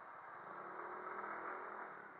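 Suzuki Address 110 scooter's single-cylinder four-stroke engine accelerating: a faint, slightly rising drone under wind rush on the microphone. It swells about half a second in and eases near the end.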